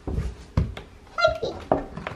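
Soft thumps of a toddler's hands and feet on hardwood stair treads as she climbs, with a short high-pitched squeal from the toddler a little after a second in.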